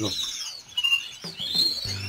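Caged canaries chirping: short high calls, several sliding up or down in pitch, with one rising call near the end.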